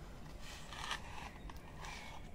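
Quiet room noise with a few faint, soft clicks.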